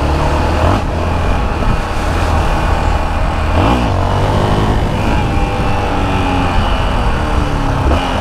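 Yamaha XT660's single-cylinder engine pulling the bike along under throttle on the move, its note dipping and climbing again about halfway through and once more near the end, over wind noise on the helmet microphone.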